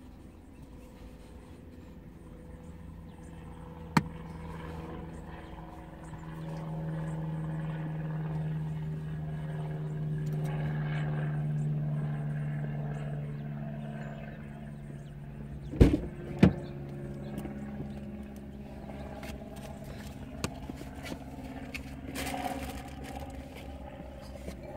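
An engine-like hum that swells over several seconds and then eases off, with one sharp click about four seconds in and two more close together later on.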